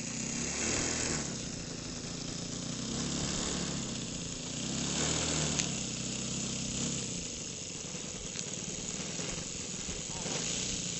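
Engine of a radio-controlled Seagull Decathlon 120 tow plane droning, its pitch wavering and its loudness swelling and falling. It fades away about seven seconds in, leaving a steady hiss with a couple of small clicks.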